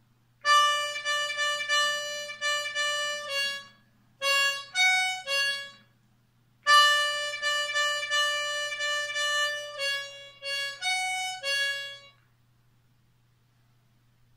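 Diatonic harmonica in A playing a short phrase of quickly repeated notes on holes 5 and 6, drawn and blown, then playing the same phrase again after a pause of about a second.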